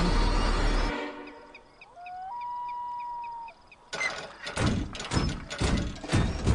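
Cartoon soundtrack of music and sound effects: a loud passage that fades out within the first two seconds, a held whistling tone in the middle, then a run of sharp clattering hits from about four seconds in.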